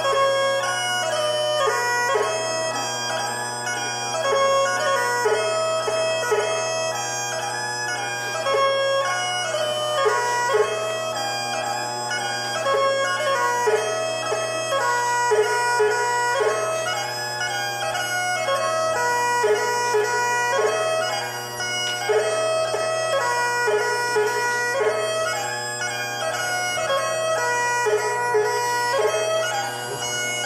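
Great Highland bagpipe playing a strathspey for the Highland Fling: steady drones held under a fast, ornamented chanter melody.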